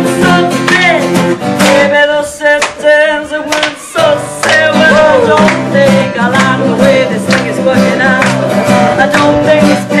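Acoustic guitars strumming chords under a woman's singing voice. The guitar chords drop away for a moment about two seconds in, then come back in full.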